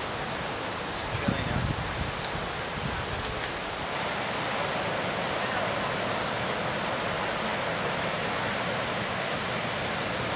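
Steady rush of ocean surf with indistinct voices mixed in. A few low thumps come between one and two seconds in.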